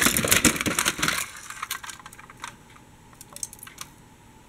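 Plastic toy trams and buses clattering and knocking against each other as a hand rummages through a plastic storage box full of them: a dense run of clicks for about the first second, then scattered single clicks.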